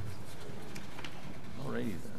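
Faint murmur of voices in a large room, with one short pitched vocal sound near the end that rises and falls.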